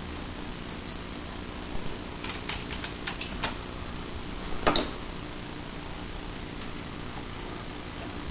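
Computer keyboard keys clicking in a short run about two seconds in, then one louder knock near the middle, over a steady fan hum.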